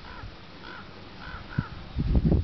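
A bird calling in the background, about four short calls that each rise and fall in pitch, with a single knock near the end.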